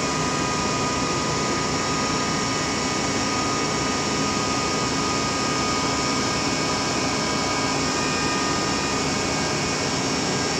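Truck-mounted ANFO auger unit running off the truck's PTO and hydraulic system: a steady, loud mechanical drone with several constant whining tones laid over it.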